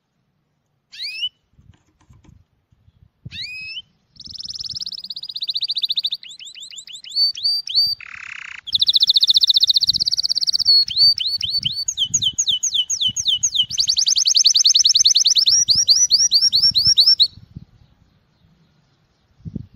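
Male domestic canary singing breeding song. Two short rising call notes come first. From about four seconds in there is a long run of fast trills, each phrase a rapidly repeated note at its own speed, with a brief harsh buzzy note about eight seconds in. The song stops about a second before the end.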